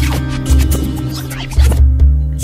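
Background music with a heavy, pulsing bass beat, overlaid with quick scratchy, sliding sound effects that glide up and down in pitch.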